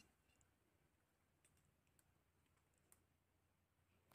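Near silence, broken by a few faint clicks.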